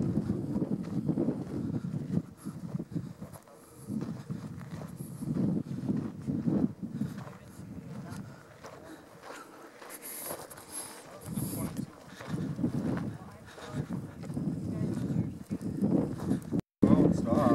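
Footsteps of someone walking over dry desert ground and scrub, uneven soft thuds and rustling, with wind on the microphone and faint, indistinct voices.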